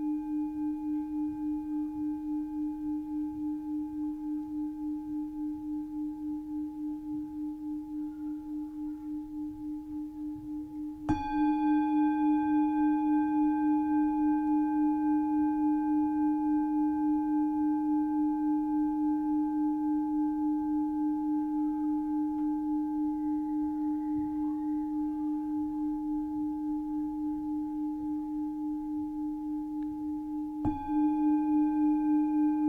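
Metal singing bowl ringing with a steady low tone, a few higher overtones and a slow pulsing waver. It dies away slowly, is struck again about 11 seconds in and rings on louder. It is rung to close a meditation sit.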